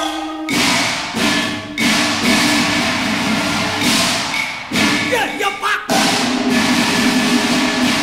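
Cantonese opera percussion interlude: several sudden crashes from gongs and cymbals, each ringing on over a steady accompaniment.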